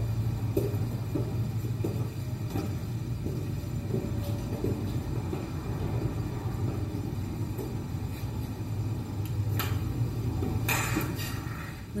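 A steady low rumble, with a few faint knocks and a short hiss near the end.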